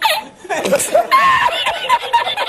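A man laughing hard. About a second in, his laugh breaks into a fast run of short, high-pitched bursts.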